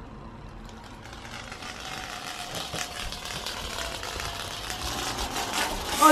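A Malteser rolling down a stretched tape measure blade, a steady rattling rumble that grows gradually louder.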